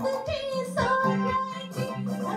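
A woman singing a Hindi film song into a microphone, holding and bending long melodic notes over keyboard accompaniment with a steady bass beat.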